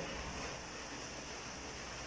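Faint, steady background hiss of room tone, with no distinct sound event.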